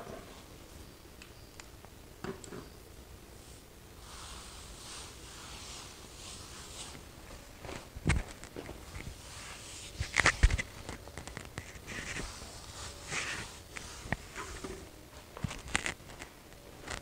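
A cloth rag wiping grout cleaner off ceramic tile grout lines, in soft rubbing strokes, with two sharp knocks on the hard tile floor about eight and ten seconds in.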